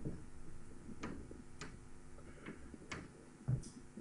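A few faint, unevenly spaced clicks and taps over a steady low hum.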